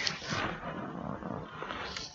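Handling noise from a Planet VIP-256 desk IP phone's handset being lifted off its cradle: a rushing, rustling noise that starts suddenly and lasts about two seconds.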